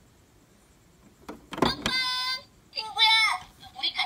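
Near silence for about a second, then a click and a short, steady high tone, followed by a brief wavering voice-like phrase.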